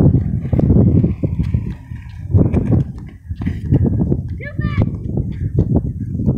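Penny board's small wheels rolling over a concrete sidewalk, a low rumble that comes in uneven bursts about once a second as the rider pushes and coasts. A short vocal sound about four and a half seconds in.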